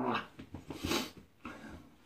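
A man's drawn-out "oh" trailing off, then a towel rubbing over his freshly rinsed face with breathy exhales into the cloth, the loudest rush about a second in.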